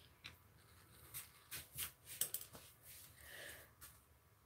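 Faint hand-handling sounds: a scatter of soft clicks, taps and rustles as a painted bath bomb is handled and set back down among the others on the table.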